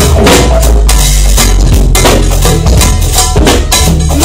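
A live band playing loud, with a drum kit beating out a steady rhythm over a sustained low bass line.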